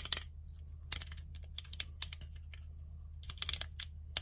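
Helios-44-2 lens's aperture (diaphragm) ring being turned by hand, giving small dry clicks in short irregular clusters as it steps through its detents.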